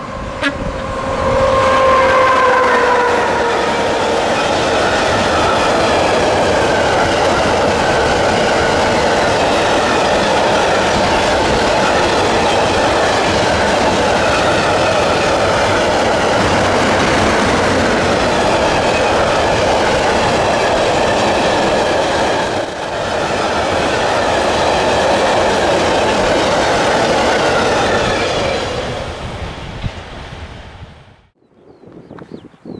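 An electric freight locomotive sounds a horn blast that sags slightly in pitch as it comes on. It then passes with a long train of loaded car-carrier wagons, whose wheels on the rails make a loud, steady noise for about 25 seconds before fading out near the end.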